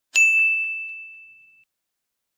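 A single bell-like ding: one clear tone with fainter higher overtones, struck once and fading away over about a second and a half.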